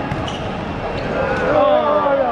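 A football being kicked on a hard outdoor court during a scramble in front of the goal. Men's voices call out from about a second in.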